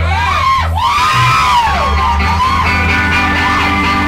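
A live band playing loudly: low bass and guitar notes held steady under a high, bending tone that swoops up and down several times.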